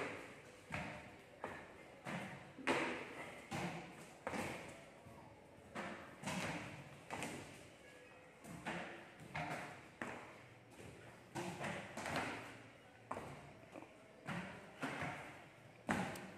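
Feet in sneakers landing on a concrete gym floor: a string of short, irregular thuds, about one to two a second, from repeated jumps in and out of tyres laid on the floor.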